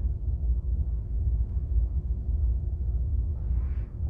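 Steady low background rumble with a faint constant hum, and a soft brief hiss near the end.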